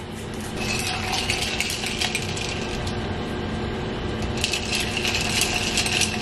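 Matcha being mixed in a glass jar: a steady rattling with many small clinks of a utensil against the glass, louder in the second half and stopping suddenly at the end.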